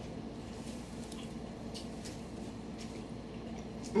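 Quiet kitchen room tone: a steady low hum, with a few faint soft clicks of someone chewing a piece of cinnamon twist.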